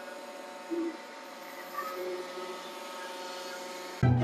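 Tennant T7 ride-on floor scrubber running, its motors giving a steady hum with several held whining tones.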